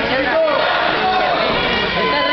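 Ringside crowd talking and shouting over one another, many voices at once.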